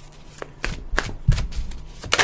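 Tarot cards being handled, with several crisp flicks and slides of card stock starting about half a second in, and a dull thud a little past halfway.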